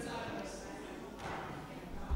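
Low murmur of voices in a large council chamber, with a couple of soft footsteps.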